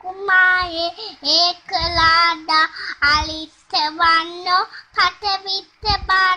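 A young child singing alone, a string of short held notes with brief breaks between them.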